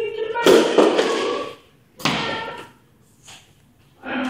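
A man's loud wordless shouts, one at the start and a second about two seconds in, with a sharp thump about half a second in.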